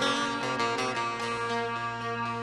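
Turkish folk music: a bağlama (long-necked saz lute) picks a melody over a steady held keyboard accompaniment.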